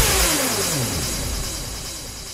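Hardstyle music at a breakdown: the beat stops on a deep bass hit, then a descending sweep effect falls in pitch and fades out.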